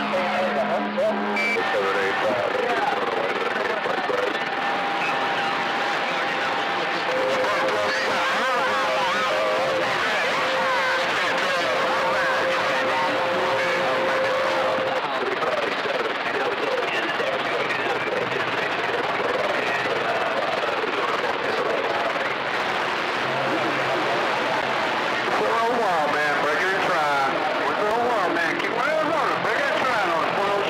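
CB radio receiver audio: several voices on the channel talking over one another through static, too garbled to make out. Steady whistle tones come and go, the longest through the first half.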